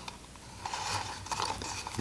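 Faint handling sounds of a Rolleiflex 2.8F being loaded with roll film: the paper leader rustling and a few small clicks as it is fed onto the upper take-up spool.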